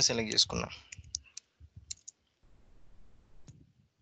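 A few separate computer keyboard keystrokes clicking, typing a few characters: a quick cluster about a second in, another near two seconds, and a last one shortly before the end.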